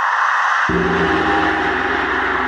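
Opening of the next song in the mix: a steady wash of synthesized noise, joined a little under a second in by low, held bass notes.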